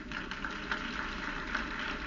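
Lecture-hall audience laughing and clapping, a dense, steady crackle of many hands and voices.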